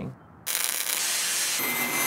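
Steady hissing noise that starts about half a second in, with a thin high whine joining near the end.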